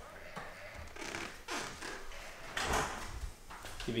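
Movement and camera-handling noise: about half a dozen soft swishes and scuffs at uneven intervals as a person moves about with a handheld camera.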